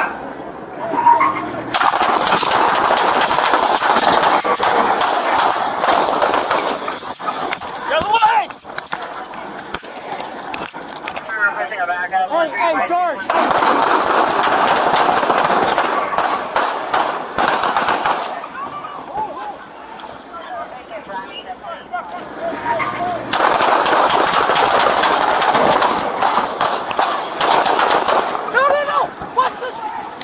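Police gunfire: three stretches of rapid, overlapping shots from several officers, each lasting about five seconds, with shouting in the gaps between them.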